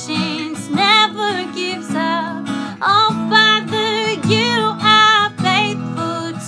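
A woman singing a slow worship song with vibrato, accompanied by a strummed acoustic guitar.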